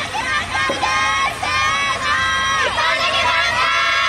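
Many girls' voices shouting long, drawn-out cheers together, several held calls overlapping one another, the chanted support typical between points in a soft tennis team match.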